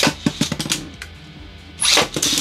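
Beyblade Burst tops in a plastic stadium: a loud rip of the launcher right at the start and again near the end, with the spinning top clicking and knocking against the plastic arena in between.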